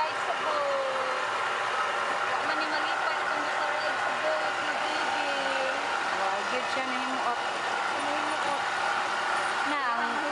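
Small river boat under way, a steady running hum, with scattered voices of people talking in the background.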